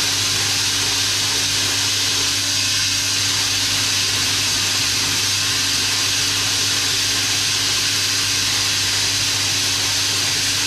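Koi pond drum filter running a manually held clean cycle: a steady hiss of its spray bar jetting water through the drum screen, with a low steady hum beneath and waste water running down the chute.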